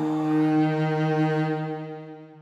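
Film score music holding a low sustained chord, which begins to fade away near the end.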